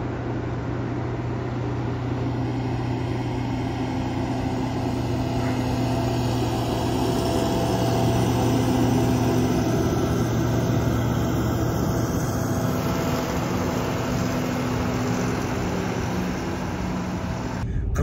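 A heavy semi-truck's diesel engine droning steadily as it drives along the mountain road, growing a little louder toward the middle and easing off again.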